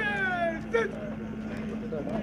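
A man's shouted parade drill command: a long drawn-out call falling in pitch at the start, followed by a couple of short clipped syllables, over a steady low hum.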